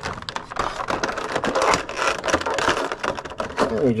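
Clear plastic packaging tray crinkling and crackling in quick irregular clicks as a vinyl figure is worked out of it by hand.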